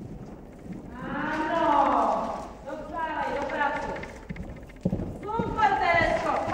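People's voices calling out in drawn-out phrases, with the dull thud of horses' hooves on arena sand underneath.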